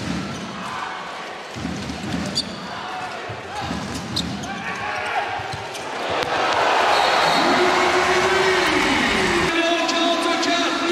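Handball bouncing on an indoor court floor, heard over arena crowd noise. The crowd swells louder about six seconds in, with a sustained chant-like tone near the end.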